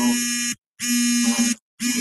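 Loud, steady electrical buzz with a long string of overtones swamping a remote speaker's call audio, cutting out twice to brief dead silence; faint, garbled speech lies underneath.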